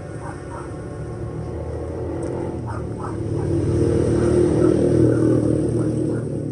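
Low rumble of a passing motor vehicle, growing louder to a peak past the middle and then fading, over faint background music.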